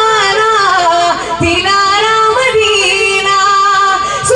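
A high solo voice singing an Urdu naat into a microphone, drawing a word out into long held notes that bend and waver in pitch, with no break for breath.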